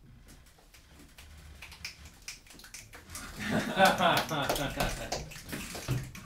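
A few seconds of faint scattered clicks and shuffling, then, from about halfway in, loud voices and laughter from several people in a small room.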